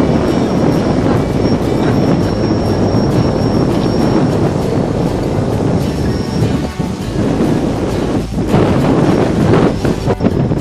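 Wind buffeting an outdoor microphone: a loud, steady, noisy rush, heaviest in the low range.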